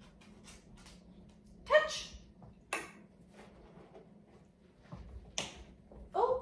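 Dog giving two short barks about a second apart, a little under two seconds in, then one more short, sharper sound near the end.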